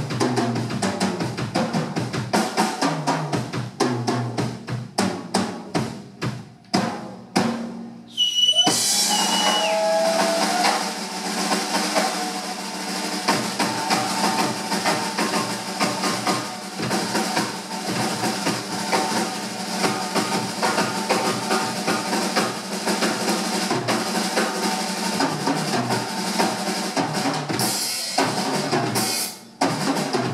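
Live rock drum-kit solo on a double-bass-drum kit. The first few seconds are separate hard strokes on drums and bass drums with short gaps between them. From about eight seconds in it turns into dense, continuous rolls under ringing cymbals.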